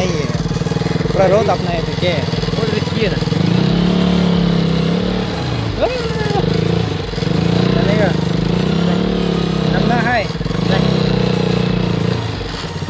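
KTM RC sports bike's single-cylinder engine running in a low gear over a rutted mud track. The revs rise about three and a half seconds in, ease off briefly near six and ten seconds, and pick up again each time.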